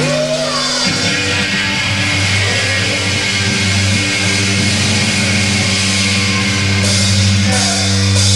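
Live heavy rock band playing the opening of a song: electric guitars and bass hold low, sustained chords that change about a second in. Drums join with cymbal crashes near the end.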